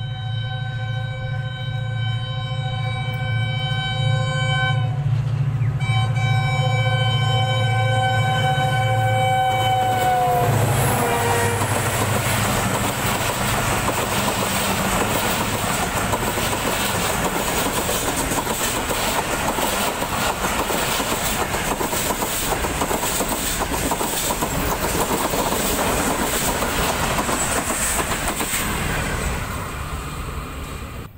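Pakistan Railways HGMU-30 diesel locomotive sounding its horn in two long blasts over a low engine rumble; the second blast drops in pitch as the locomotive passes. Then the express's passenger coaches roll by at speed, wheels clattering steadily over the rail joints.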